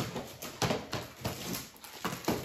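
Clear plastic bags and packaging rustling and crinkling in short, irregular bursts as items are rummaged through in a plastic crate.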